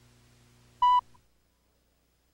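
A single short, loud tone beep from a commercial tape's countdown leader, about a second in, over a faint low hum that stops just after the beep.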